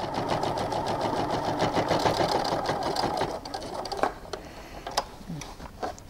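Baby Lock sewing machine stitching at speed through thick, layered quilted fabric, running steadily for about three seconds and then stopping. A few light clicks follow.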